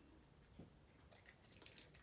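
Near silence: room tone, with a few faint light clicks near the end as a small plastic action figure is handled.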